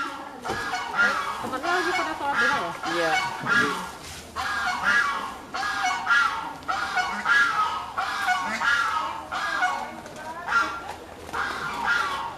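A bird honking over and over in a long run of short calls, about one to two a second.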